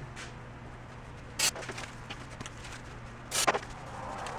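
Two short hissing swishes about two seconds apart, over a faint steady hum, as a plastic number plate is cleaned with a paper towel.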